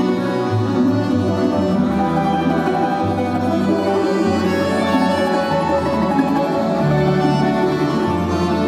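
Solo domra playing with a Russian folk-instrument orchestra of plucked domras, bowed violins and keyboard gusli, a steady, full ensemble sound.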